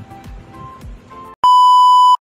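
Soft background music with a steady beat, then about one and a half seconds in a loud, steady high-pitched test-tone beep of the kind played over TV colour bars, which cuts off suddenly.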